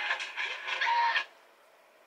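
Television audio of a costume drama with music, cutting off suddenly a little over a second in as the channel is switched, then near silence.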